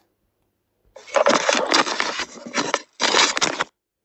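Loud, rough, unpitched noise from the soundtrack of a smoke-detector spy camera's recording being played back, with a thinner sound than the room speech. It starts about a second in, breaks briefly, and stops sharply shortly before the end.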